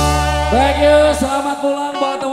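Live dangdut band music: a drum hit opens, then the drumming stops while a low bass note holds and fades out a little over a second in, and a gliding melody line carries on over it.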